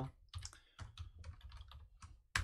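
Computer keyboard typing: a run of light keystrokes, several a second.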